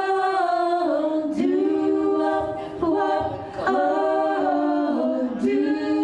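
Five women singing in close harmony into microphones, unaccompanied, holding long chords that change every second or so.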